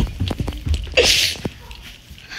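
Handling noise from a phone camera being moved quickly: knocks and rumble, with one short breathy, sneeze-like burst from a person about a second in.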